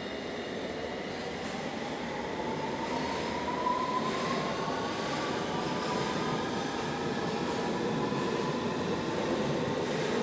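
London Underground District line train pulling out of an underground station platform. Its running noise grows louder, and a motor whine rises in pitch over the first half as the train picks up speed.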